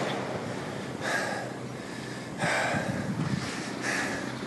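Wind buffeting the microphone over the wash of sea waves, swelling twice.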